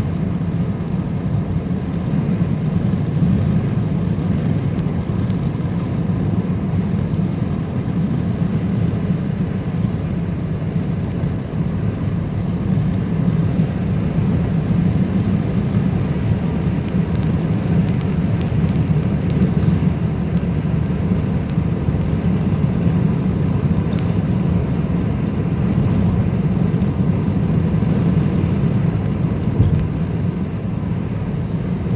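Steady low rumble of a vehicle driving on the road, heard from inside its cabin.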